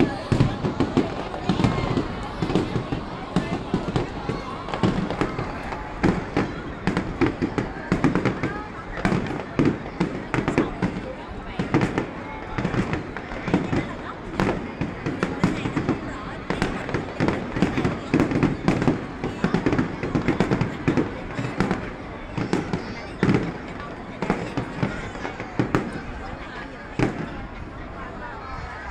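Aerial fireworks display: a dense, rapid run of bangs and crackles from bursting shells, thinning out near the end.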